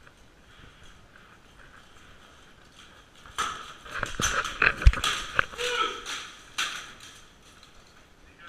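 Béhourd fighters in plate armour clashing: a quick flurry of sharp metal strikes of steel weapons on armour, starting about three and a half seconds in and lasting about three seconds, with the loudest blow near the middle.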